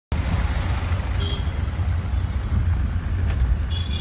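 Road traffic noise: a steady low rumble with hiss from vehicles moving on a highway, with two brief high chirps in the first half.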